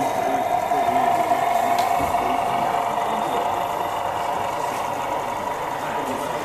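O gauge model diesel switcher locomotive with sound, giving a steady diesel-engine drone that eases slightly after about two seconds.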